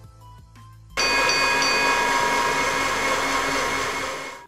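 An electric blender motor running steadily at full speed for about three seconds, starting abruptly about a second in, with a steady whine over its noise. It is blending candies together.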